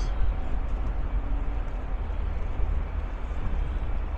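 Passenger ferry under way: a steady low engine rumble with a rushing noise over it.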